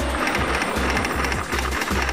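Television programme intro music with a steady, fast pulsing bass beat under a dense, bright upper layer.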